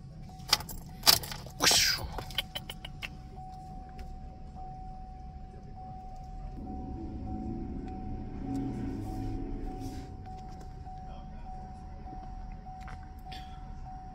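Car keys jangling and a few sharp clicks as the ignition key is turned to on, with the engine left off. A thin steady high tone follows and lasts to the end, and a low hum swells in the middle.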